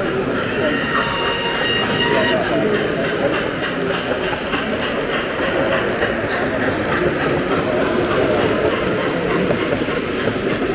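Steady, indistinct chatter of many people, with the running rumble and wheel clatter of an OO gauge model train: a steam locomotive hauling a long rake of freight wagons along the layout.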